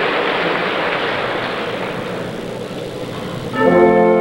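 Audience applause slowly dying away. About three and a half seconds in, the orchestra comes in suddenly with a loud held chord.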